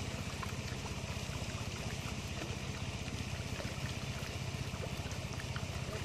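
A small engine running steadily, a low hum with a fast, even pulse, under a constant hiss like running water.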